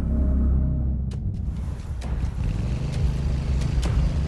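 Adventure motorcycle engine running with a low rumble, its note rising slightly about halfway through, with a few sharp clicks over it.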